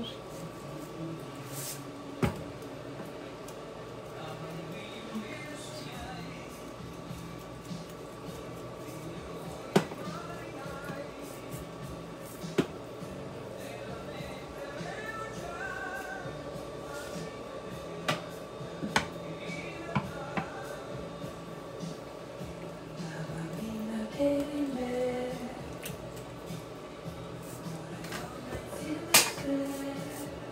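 Faint background voices and music over a steady hum, with a handful of sharp clicks and knocks from hands working raw chicken in a stainless steel bowl. The loudest click comes near the end.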